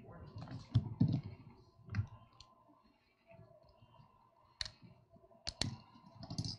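About half a dozen sharp clicks and knocks at uneven intervals, two of them close together near the end, with low murmuring in the first second.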